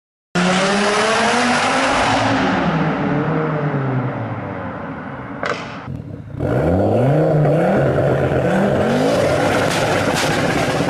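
Car engine at high revs winding down, its pitch falling over about four seconds. About six seconds in it comes back suddenly with a burst of revving, the revs climbing several times.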